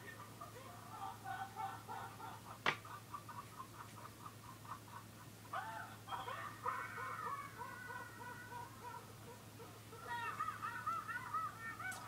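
Laughter playing back from a video through computer speakers: a person laughing in rapid, even pulses of several a second, then in wavering, high-pitched laughs. A single sharp click comes near three seconds in, over a steady low hum.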